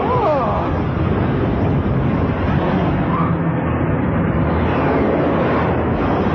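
Cartoon battle sound effects: a dense, steady rumble of explosions and energy-weapon blasts, with a brief gliding cry or zap at the very start.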